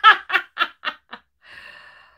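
A woman laughing: about six short bursts of laughter that fade away over the first second or so.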